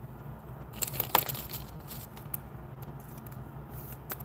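Handling of foil trading cards and their packaging: a few light clicks and taps, the sharpest about a second in, over a faint steady low hum.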